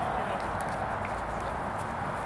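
Sounds of a small-sided football game on artificial turf: players' footsteps and light touches on the ball over a steady background hiss.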